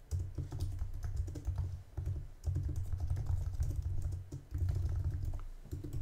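Typing on a computer keyboard: three quick runs of keystrokes with short pauses between them, each keystroke a light click over a dull low thud.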